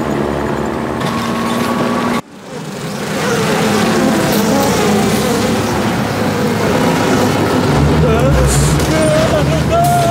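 Cartoon truck engine sound running steadily. It cuts out abruptly about two seconds in, then builds back up and runs on louder.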